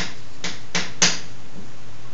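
Chalk writing on a blackboard: four short, sharp taps and scrapes of the chalk, the loudest about a second in.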